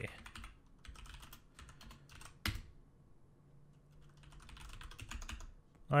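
Computer keyboard being typed on quietly in short scattered bursts of keystrokes, with one sharper key click about two and a half seconds in.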